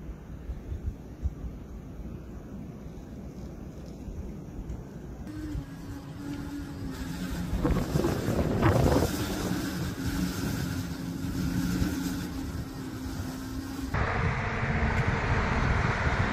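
Storm wind buffeting the microphone, low and rumbling at first, then gusting louder from about five seconds in over a steady low hum, changing abruptly again to a brighter hiss about fourteen seconds in.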